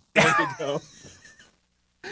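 A man laughing: a loud outburst that trails off over about a second and a half.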